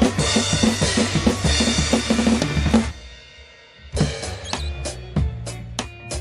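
Drum kit played hard over a rock backing track: dense kick, snare and crash cymbal hits until about three seconds in. The drums then stop for about a second, leaving the backing track's held chord, and come back with lighter, sparser hits.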